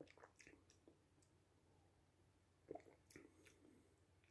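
Near silence, with faint mouth sounds of beer being sipped and swallowed from a glass: a few soft clicks and smacks, the most distinct a little under three seconds in.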